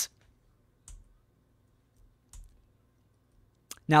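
A few faint clicks at a computer as a presentation slide is advanced: one about a second in, one a little past midway and a sharp one just before speech resumes, with near silence between them.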